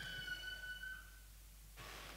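A faint, high, steady ringing tone with overtones, held for about a second before fading out, then quiet hiss of room tone.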